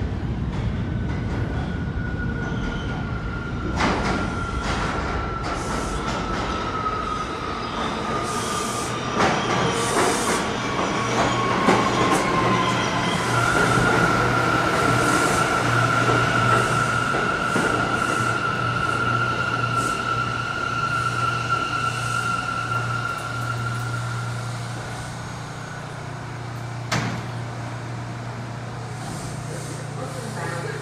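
An R179 subway train pulls into the station with a whine that falls slowly in pitch as it slows, and rail clicks pass under the wheels. A long, steady high squeal follows as it brakes to a stop. It then settles to a steady hum while standing, with a sharp clack near the end as the doors open.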